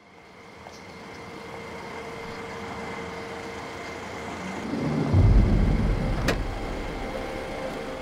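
A motor vehicle engine running, with a steady hum and hiss fading in. A much deeper, louder rumble comes in about five seconds in, with a single sharp click shortly after.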